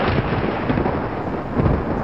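A loud, rumbling rush of noise, an end-screen sound effect, running on steadily and swelling again near the end.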